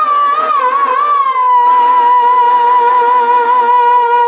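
A male voice singing a Telugu drama verse through a stage microphone. It bends through a few ornamented turns, then holds one long high note with a slight vibrato.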